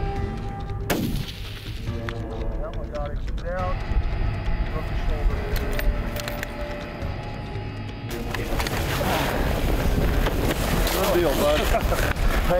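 A single rifle shot about a second in, then low men's voices and strong wind noise on the microphone that grows louder from about eight seconds in.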